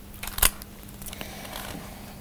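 Pages of a small paperback book being leafed through: soft paper rustles with one crisp snap of a page about half a second in.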